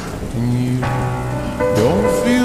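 Steady recorded rain mixed with a slowed, reverb-heavy song. Held low notes come in about half a second in, and more held notes join about a second in.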